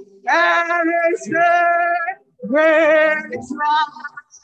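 A woman singing into a microphone in long held notes with vibrato, in three phrases with a short break about two seconds in, over a steady low sustained chord.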